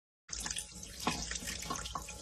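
Sink faucet running a thin stream of water, starting about a quarter of a second in after a brief silence.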